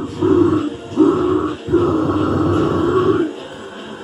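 A man's harsh, growled metal vocals into a handheld microphone, in three phrases. The last phrase is the longest and breaks off a little past three seconds in.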